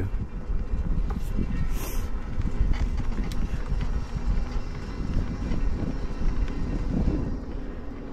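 Wind buffeting the microphone and tyre rumble from an electric bike being ridden, a low, uneven rumble with a short high hiss about two seconds in.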